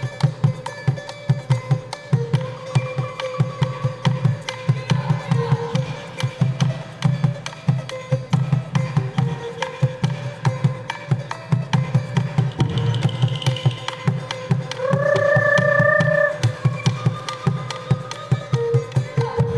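Traditional-style music led by a hand drum beaten in a fast, even rhythm, with a melody line above it and a louder held note about fifteen seconds in.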